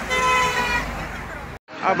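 A road vehicle's horn sounding one long steady blast that fades out about a second in, with voices talking beneath it.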